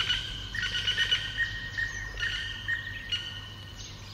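Birds chirping in a run of short, high, repeated notes that grow fainter toward the end.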